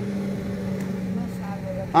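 A steady low machine hum, one unchanging tone, like a motor running nearby.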